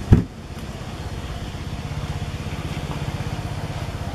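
An engine idling steadily, a fast, even low pulsing, with one loud low thump just after the start.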